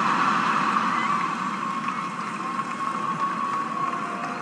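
Stand-up comedy audience laughing and applauding, slowly dying down.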